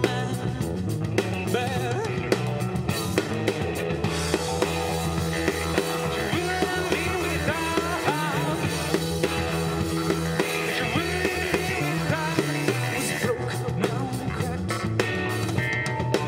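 A band playing live: drum kit, electric bass, electric guitar and keyboards together, with a steady beat.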